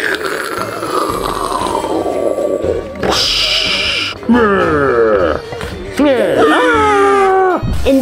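Edited-in sound effects over background music: a long falling whistle-like glide, a short burst of hiss about three seconds in, then cartoonish pitched vocal sounds that slide up and down.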